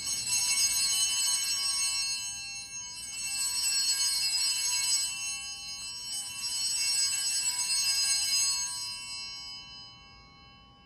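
Altar bells, a cluster of small hand bells, shaken three times to mark the elevation of the chalice after the consecration. Each ring is a jangling shimmer of about two to three seconds, and the last one fades out near the end.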